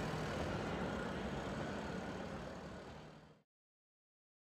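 Steady background rumble and hiss with a faint low hum, fading out to dead silence a little over three seconds in.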